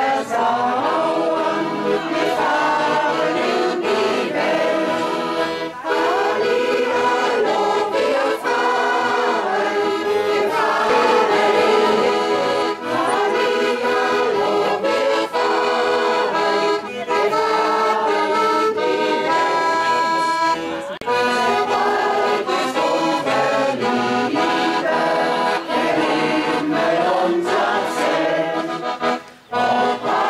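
Piano accordion accompanying a group of people singing a song together, with a short break near the end.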